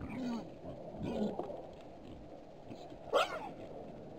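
Wild boars calling while feeding: two short, low grunting calls in the first second or so, then a louder, higher squeal about three seconds in.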